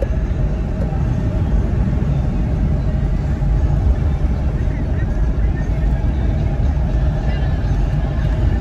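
Car cabin noise while driving: a steady low road and engine drone heard from inside the car.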